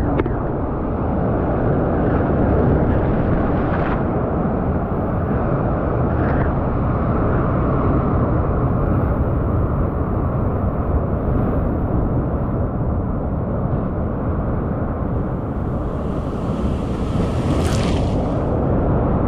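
Ocean surf breaking and foaming over shoreline rocks, a steady loud rush with heavy wind rumble on the action camera's microphone.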